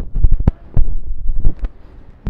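Irregular loud low thumps and bumps from a handheld phone being jostled and rubbed against its microphone as its user walks.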